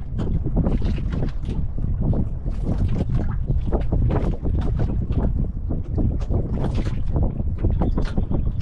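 Wind buffeting the microphone, with water splashing and lapping against the hull of a small outrigger boat at sea.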